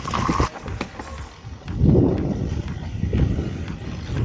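Mountain bike rolling over a rough dirt trail: tyres rumbling and the bike clattering and rattling over roots. It grows louder from a couple of seconds in.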